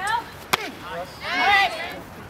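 A pitched softball smacks into the catcher's mitt about half a second in, a single sharp pop. High-pitched shouted voices come just before and after it.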